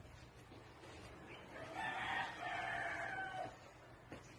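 A faint, single drawn-out bird call, plausibly a rooster crowing, about two seconds long, starting about a second and a half in, with a short break before a longer held final note.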